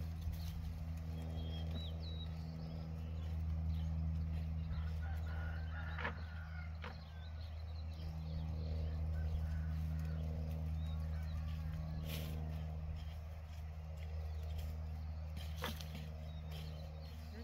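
A steady low drone from an engine or motor runs throughout. A few sharp clicks fall through it, and there are some short high chirps near the start.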